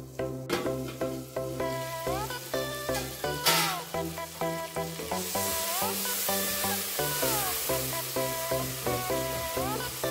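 Tomatoes and onions frying in oil in an aluminium pot, stirred with a wooden spoon, under background music with a steady beat. A short burst of hiss comes about a third of the way in, and steady sizzling follows from about halfway.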